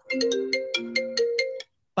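A phone ringtone: a quick melody of bright chiming notes, about six a second, that cuts off after about a second and a half.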